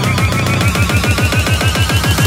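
Electronic psytrance build-up: a rapid, evenly spaced drum roll with a low thump on each hit, under a slowly rising synth tone.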